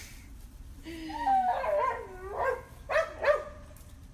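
A dog whining with a wavering, bending pitch for about a second and a half, then two short, sharp yips about three seconds in.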